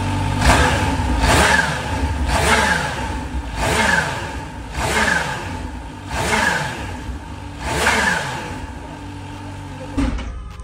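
Kawasaki Z H2's supercharged inline-four engine being revved in about seven short throttle blips, each rising and falling in pitch and settling back to idle in between. It sits at a steadier idle near the end.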